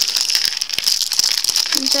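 Small plastic LEGO pieces rattling and clicking as they are tipped out of a crinkling plastic bag onto a mat, many scattered clicks over a steady high hiss.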